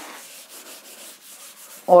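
Board duster rubbing across a chalkboard, wiping off chalk writing: a soft, steady scrubbing hiss.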